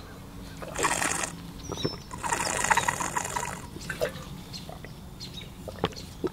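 Drinking from a Cirkul plastic water bottle through its sip lid: two noisy sucking sips, a short one about a second in and a longer one about two seconds in.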